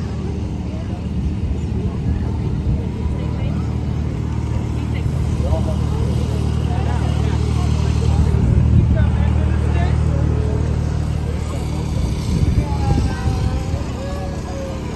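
Small engine of a ride-on tractor running steadily as it tows a children's barrel train, loudest about eight to nine seconds in when it is closest.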